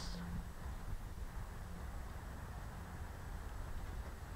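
Faint, steady background noise: a low rumble with light hiss and no distinct sound events.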